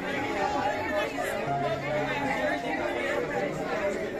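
Crowd chatter: many shoppers talking at once in a busy indoor market hall, an even hubbub of voices.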